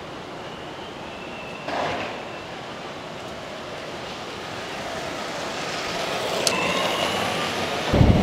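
Steady city street rumble of distant traffic, with a short louder swell about two seconds in and a gradual build toward the end, topped by a brief faint high squeal.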